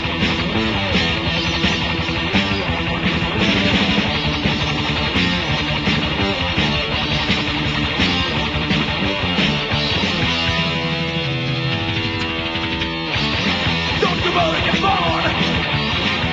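Heavy metal band playing a guitar-driven passage of electric guitars, bass and drums, as a lo-fi demo recording with the top end cut off. About ten seconds in the band holds one sustained chord for two or three seconds, then the full band drives on again.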